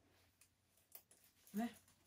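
Mostly near silence, with a couple of faint small clicks from the metal clasp of a thin chain strap being clipped onto a clutch bag.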